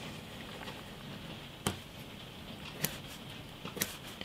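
Mechanical pencil drawing a line along a plastic French curve on a paper strip: faint scratching with three soft ticks spread through it.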